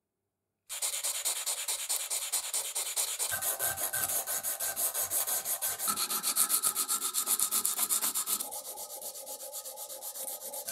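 Sandpaper wrapped around a flat file rubbing back and forth over a small steel watchmaker-vise part, in fast, even strokes of about four a second. It starts just under a second in and gets a little quieter near the end.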